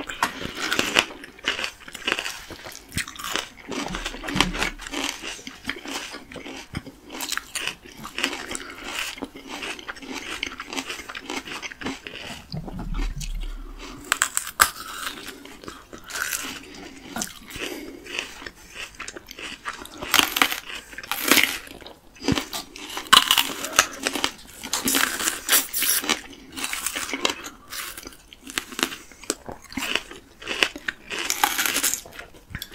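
Two people biting into and chewing crisp unripe green plums, close to the microphone: irregular sharp crunches and wet chewing, with the loudest bites in the second half.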